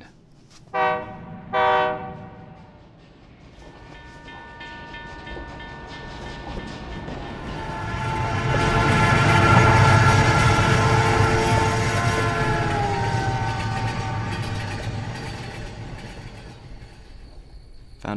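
Train horn giving two short blasts, then a train passing. Its rumble and a held horn chord build to their loudest about ten seconds in, the horn's pitch drops as it goes by, and the sound fades away as the train leaves.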